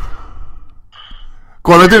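Mostly speech on a live phone call: a faint, noisy line at first, then a man speaking loudly with a sigh near the end.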